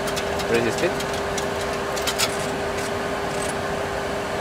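Steady cockpit noise of a Boeing 737 Classic flight simulator, a continuous rush with a constant hum, and a few light clicks from the controls as the pilots work the flap lever and autopilot panel.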